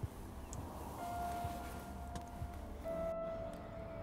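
Quiet background film music of sustained held notes: one note enters about a second in and gives way to another about three seconds in, over a low steady rumble.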